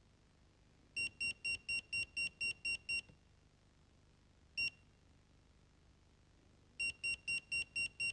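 Danfoss TPOne programmable room thermostat giving short high-pitched key beeps as its buttons are pressed, each beep confirming one step of the time setting. First comes a run of nine quick beeps at about four a second, then a single beep midway, then another quick run near the end.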